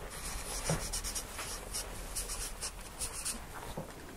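A pen scratching out a diagram in a series of short, quick strokes, faint and high.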